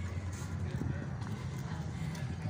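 Soft irregular knocks of footsteps and camera handling while walking on brick paving, over a steady low outdoor rumble.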